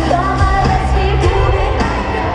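Live pop music over an arena PA: a woman singing over a heavy bass beat, recorded from among the audience.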